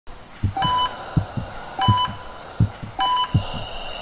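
Heart monitor beeping steadily, one short pitched beep about every 1.2 seconds, over a heartbeat's paired low thumps, lub-dub, a little under one and a half beats a second.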